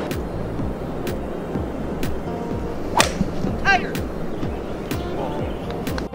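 Background music with a steady beat; about three seconds in, one sharp crack of a driver striking a golf ball off the tee.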